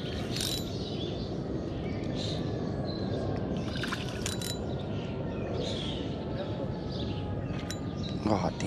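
A spinning reel being cranked while a hooked bass is fought on the line, heard as a steady rustling whir with a few sharp clicks.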